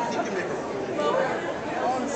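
Crowd chatter in a large hall: many voices talking at once, none clearly in front.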